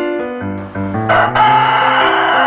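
Rooster crowing over upbeat jingle music, the crow coming in about a second in and louder than the music.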